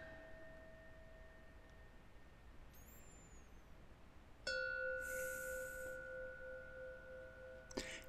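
Soft, quiet meditative background music of bell-like ringing tones. A held tone fades out over the first two seconds, then a new bell-like note sounds about four and a half seconds in and slowly fades away.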